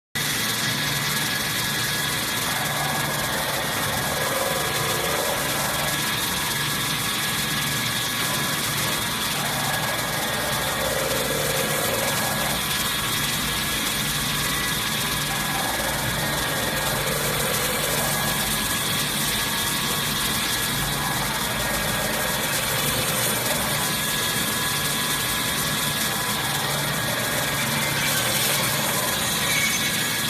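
Toilet-roll cutting machine running: a steady mechanical hum and whir with thin high whining tones over it, and a recurring change in the sound about every six seconds.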